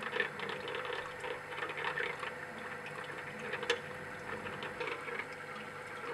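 Magnetic stir bar making strange noises in a round-bottom flask, irregular small clicks and rattles over the steady hum of the stirrer: a solid, sodium azide, is starting to form in the mixture and is catching the bar.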